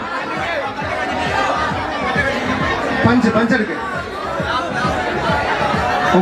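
Several voices talking and calling over microphones through a PA system, with crowd chatter and music underneath.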